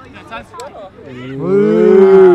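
A person's long, drawn-out call on one held vowel. It starts about a second in, swells to loud, and its pitch rises slightly and then falls.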